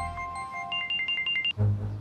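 Mobile phone giving a quick run of about six short, high electronic beeps lasting under a second. They cut off as low, pulsing background music comes in. Soft melodic music fades out under the start.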